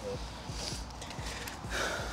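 A person's short breath near the end, over faint, regular low thumps.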